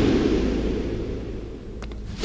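Low rumble of a film sound-effect boom dying away, fading steadily, with a couple of faint clicks near the end.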